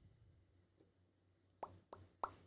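Near silence: room tone, with two or three short clicks near the end.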